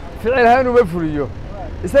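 A man talking, over a low steady rumble of street traffic.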